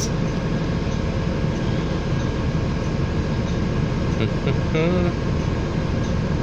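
Steady low rumble inside a Nova LFS city bus idling at a stop, its engine and fans running. A brief voice is heard near the end.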